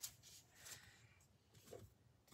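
Near silence with a few faint taps and rustles as a tarot card deck is handled and set down on a table.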